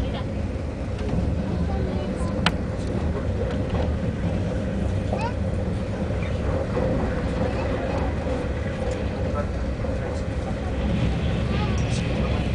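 Steady low rumble with a constant hum inside the cabin of an AVE high-speed train running at speed, with faint passenger voices and one sharp click about two and a half seconds in.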